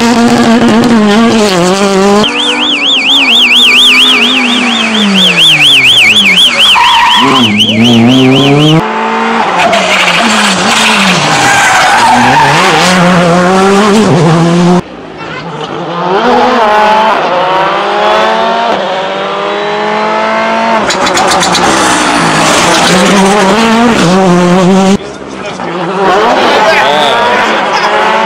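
Rally cars, among them a Ford Fiesta and a Škoda Fabia, passing one after another, engines revving hard and dropping through gear changes. The sound jumps abruptly from one pass to the next several times.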